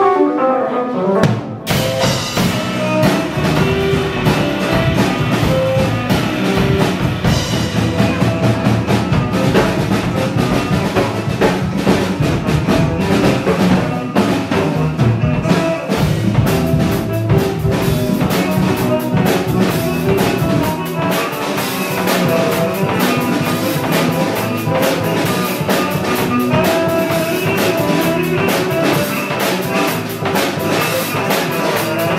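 Live band music led by a full drum kit, drums and cymbals played in a busy groove under pitched instruments. It opens with a single hit, and the full band comes in about two seconds in.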